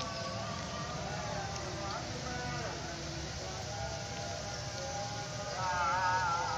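A distant voice holding long, wavering sung notes over a steady low background hum. The voice swells louder near the end.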